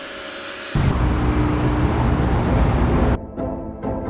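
Kärcher K2 pressure washer's motor and pump running steadily with the trigger released: the fault of a unit that stays on continuously yet builds no pressure. Under a second in, a loud deep rumble takes over, and about three seconds in music with a steady drum beat starts.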